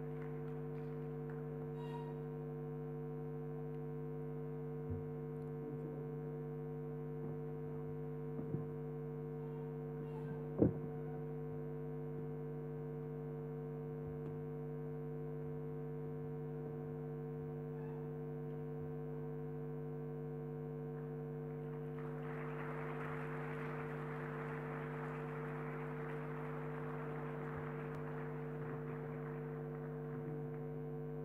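Steady electrical mains hum through the sound system, with a few faint clicks and one louder click about ten seconds in. About two-thirds of the way through, audience applause starts and keeps going.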